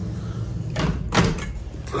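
Glass balcony door being closed, with two short noisy sounds close together about a second in.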